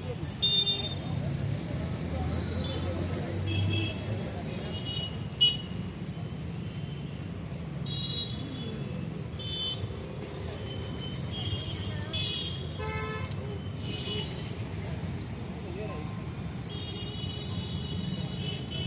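Road traffic with repeated short toots of vehicle horns, under a person talking. A sharp click about five seconds in is the loudest moment.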